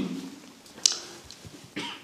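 A single short cough about a second in, close to the microphone, after a voice trails off at the start.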